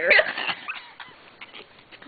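A dog whining briefly at a high pitch in the first half second, then only faint rustling and small clicks.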